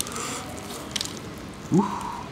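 KFC extra crispy fried chicken being torn apart by hand, its crisp coating crackling and crunching, with sharp cracks at the start and about a second in. A short grunt from the man near the end.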